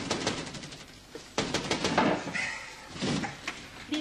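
Rapid knocking and rattling at a wooden paned window as it is banged on and pushed open, in quick bursts of sharp clicks and knocks.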